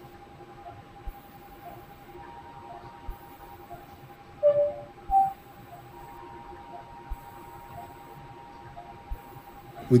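Operating-theatre electronic equipment: soft beeps repeating about one and a half times a second over a steady electrical hum, with two louder short beeps of different pitch about halfway through.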